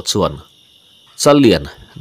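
Steady high-pitched chirring of insects, typical of crickets, running under a voice that speaks twice briefly, at the start and again past the middle.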